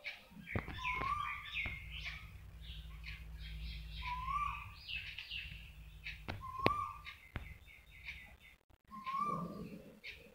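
Birds chirping, with one short call repeating about every two to three seconds, over a low steady hum and a few sharp clicks.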